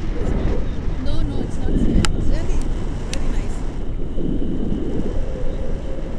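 Wind buffeting the microphone of a camera held out from a paraglider in flight: a loud, steady low rumble, with two sharp clicks about two and three seconds in.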